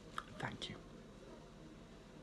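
Only speech: a man quietly saying "thank you", then faint room tone.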